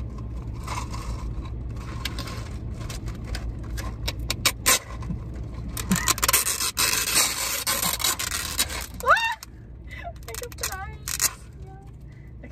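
Plastic sealing film being peeled off the tops of cups of ice: crinkling plastic and scattered clicks, with a longer scraping rip about six seconds in.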